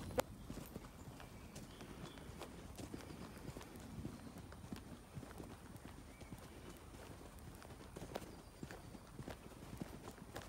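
Faint footsteps of someone walking along a dirt path, a soft irregular crunch of steps.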